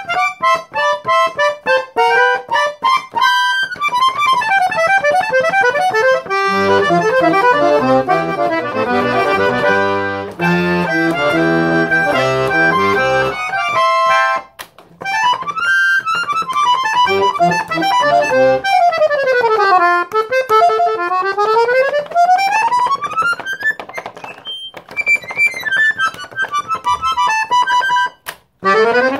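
Todeschini Super 6 piano accordion with octave-tuned reeds played solo: fast scale runs sweeping down and up the treble keyboard. Bass and chord buttons fill in from about six to fourteen seconds in, there is a short break near fifteen seconds, and more quick down-and-up runs follow.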